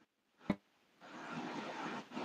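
A single sharp click about half a second in, then faint, steady noise from about a second in: the live call's audio cutting back in after a connection dropout.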